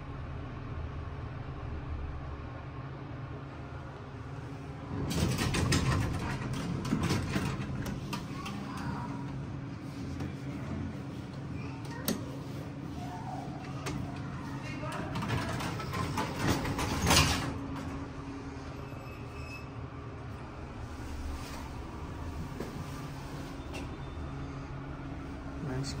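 Armor traction elevator doors sliding open with clattering about five seconds in, then sliding shut, ending in a sharp bang around seventeen seconds in. A steady low hum runs underneath.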